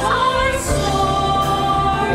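Several women's voices singing a musical theatre song together in harmony with piano accompaniment, sliding into a long held note about half a second in.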